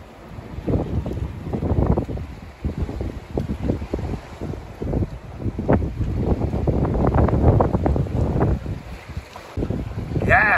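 Wind buffeting the microphone in uneven gusts, loudest past the middle.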